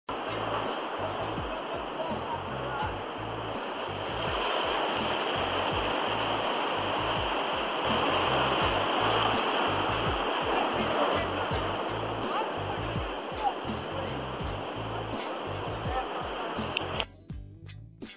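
Breaking surf rushing steadily, heard with background music with a steady beat laid over it. The surf sound cuts off suddenly near the end, leaving only the music.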